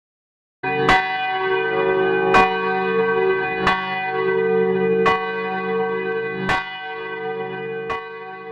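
A church bell tolling at a slow, even pace, six strikes about a second and a half apart, each stroke's ringing carrying over into the next. It cuts in suddenly and grows quieter toward the end.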